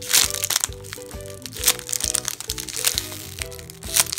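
A squishy toy's clear plastic bag crinkling as it is handled, in several loud bursts: at the start, a little before two seconds in, and again near the end. Background music with a light melody plays under it.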